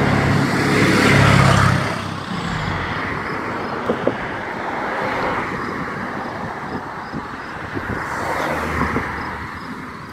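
Road traffic: a vehicle passing close by is loudest in the first two seconds, then fades into steady traffic noise from cars going along the street.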